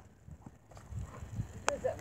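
Soft, irregular thuds of a dog's paws running and landing on grass as it chases a thrown toy, with one sharp click near the end.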